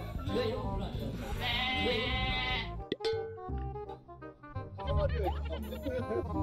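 Several young men talking and laughing over background music, with an abrupt cut about halfway through to steadier music and more chatter.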